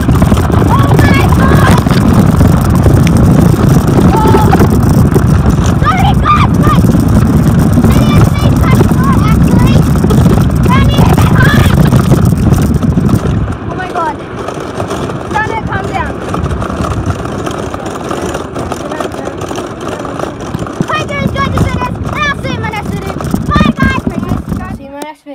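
Wooden billycart rolling fast down a wet asphalt street: a loud rumble of its wheels on the road mixed with wind buffeting the phone's microphone. The rumble drops sharply about 13 seconds in as the cart slows to a stop, and a quieter noise goes on.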